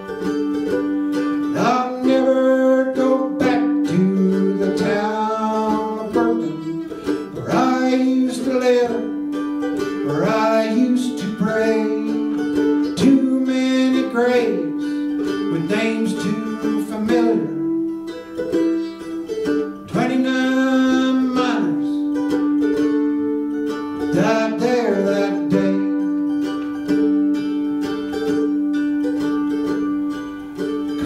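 A man singing a folk ballad to his own accompaniment on a small plucked string instrument, with repeated picked notes over a low note held steadily underneath.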